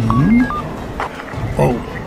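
A few short electronic telephone keypad beeps, as a number is dialled, under an actor's voice.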